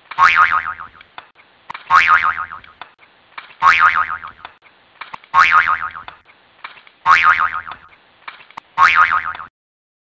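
A twangy boing-like sound repeating at an even pace, about once every 1.7 seconds, six times. Each one starts suddenly and rings briefly as it fades, with faint clicks between repeats, and it stops just before the end.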